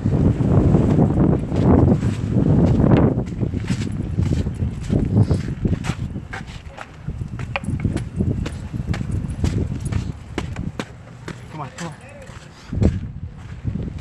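Longboard wheels rolling on pavement: a heavy rumble, strongest for the first few seconds, broken by many sharp clicks.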